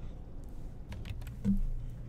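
A few computer keyboard keystrokes clicking, with one heavier key thump about one and a half seconds in.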